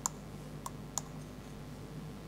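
Three short, sharp clicks of a handheld presentation remote's button as the slides are advanced, the first right at the start and two more close together just before a second in, over a low steady hum.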